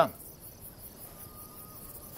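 Crickets chirping quietly in a quick, even, high-pitched pulse.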